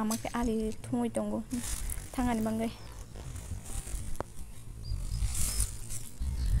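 A few short spoken phrases in the first half, then low rumbling noise on the phone's microphone as it is carried outdoors, with a single sharp click about four seconds in.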